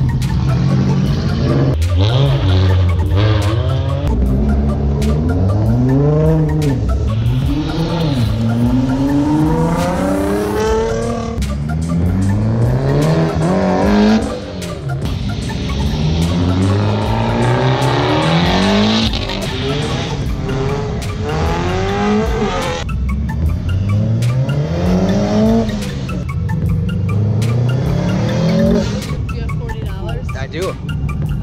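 Autocross car's engine revving hard, its pitch climbing and dropping back again and again as it accelerates and lifts between cones, with the tyres squealing at times.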